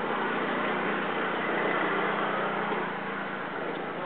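A motor scooter's small engine running close by as a steady hum, over the general noise of a busy street market.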